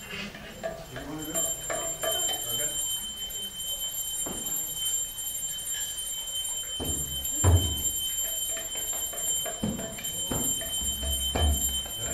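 A few scattered low thuds and knocks, the loudest about halfway through, over a steady high-pitched electronic whine.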